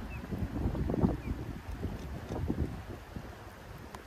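Wind gusting across the microphone, an uneven low buffeting rumble that is strongest in the first half and eases off toward the end.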